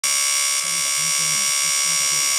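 Small DC-motor peristaltic tube pump running, a steady high-pitched electric motor whine.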